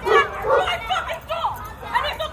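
A dog barking a few times, with people talking in the background.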